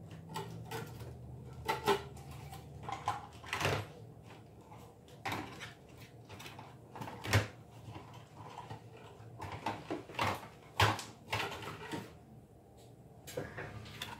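Irregular knocks, taps and clatters of craft tools being handled and moved about while a paper punch is fetched, a dozen or more separate knocks spread through. A low hum underneath stops about four seconds in.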